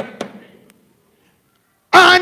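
A few sharp knocks or pops with a short echo in the first moment, then dead silence for about a second, before a man's preaching voice through the microphone starts again near the end.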